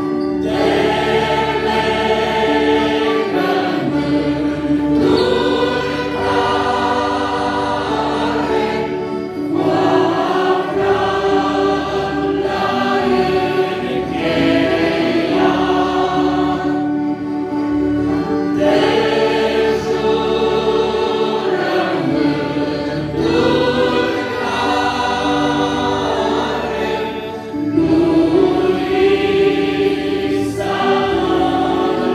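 A congregation singing a hymn together in long, held phrases, led by a woman's voice on a microphone, over electric keyboard and accordion accompaniment.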